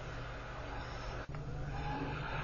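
Faint steady low hum with a light hiss: the background noise of a voice recording in a pause between words, with a brief dropout a little over a second in.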